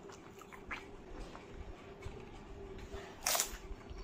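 Close-miked mouth sounds of chewing a crisp puri filled with yogurt and spicy water: small wet clicks and chews, with one louder, brief burst about three seconds in.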